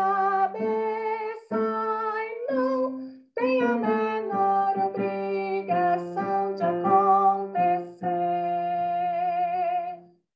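A woman singing the bass line of a choral arrangement alone, reading it note by note with Portuguese lyrics. There is a short break about three seconds in, and she ends on a long held note with vibrato.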